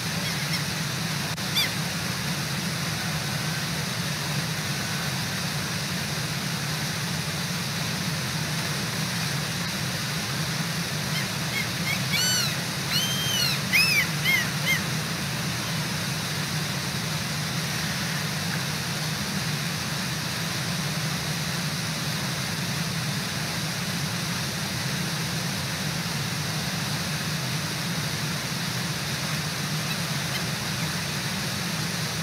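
Brooks Falls waterfall rushing steadily. About twelve seconds in, a bird gives a short run of high calls over it, with one brief call near the start.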